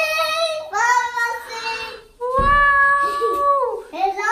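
A young child singing in a high voice, three long drawn-out phrases, the last note held about a second and a half before sliding down.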